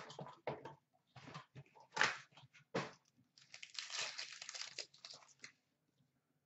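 A foil trading-card pack being torn open and its wrapper crinkled. Scattered taps and rustles of cards come first, then about two seconds of continuous crinkling.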